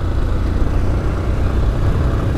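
Motorcycle ridden at steady road speed, most likely a single-cylinder Yamaha Fazer 250: a constant low engine drone under heavy wind rumble on the helmet-mounted microphone, with no changes in pitch or load.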